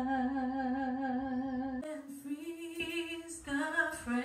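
A woman's solo singing voice holds a long note. About two seconds in it breaks off abruptly, and a further sustained sung phrase follows at a slightly higher pitch.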